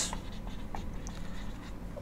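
Marker pen writing on a whiteboard: faint, short strokes against a low steady room hum.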